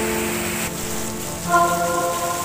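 Heavy rain falling on wet paving stones, heard as a steady hiss, under background music of long held notes that change about one and a half seconds in.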